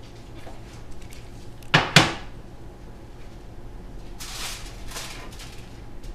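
Two sharp knocks about a quarter of a second apart in a kitchen, then about a second of rustling, as a hot baked dish is fetched from the stove in an oven mitt.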